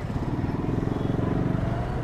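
Yamaha R15 V2 motorcycle's single-cylinder engine running under the rider at low street speed, a rapid even firing pulse that grows a little louder towards the middle and eases slightly near the end.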